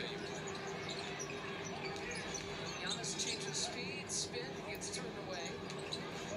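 Basketball game broadcast audio playing at a low level: steady arena crowd noise with a basketball bouncing on the hardwood and a commentator's voice faintly under it.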